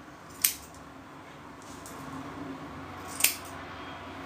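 Metal scissors snipping through thick beard hair: two sharp snips, one about half a second in and one near the end.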